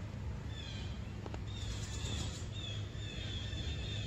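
A bird calling in the background: a series of short, high chirps starting about half a second in, over a steady low hum.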